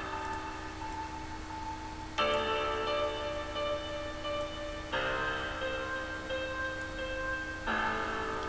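Synthesized music playing back: sustained piano and pad chords from Nexus synth presets, changing chord about every two and a half seconds.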